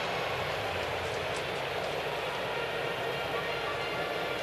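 Steady crowd noise of a baseball stadium, an even background hum with no single sound standing out.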